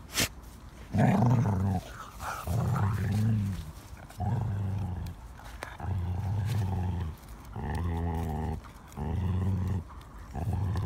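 Skye Terrier growling over a big stick in its mouth: a run of six low growls, each about a second long, about one every one and a half seconds. A single sharp knock comes just after the start.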